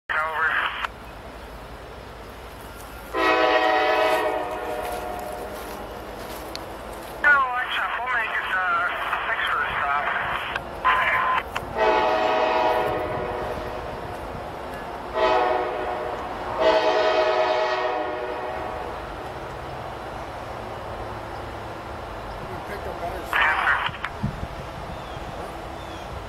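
Freight diesel locomotive horn sounding from an approaching train, a chord of several pitches in a series of long and short blasts. The sequence of long, long, short, long fits a standard grade-crossing warning, followed by more blasts.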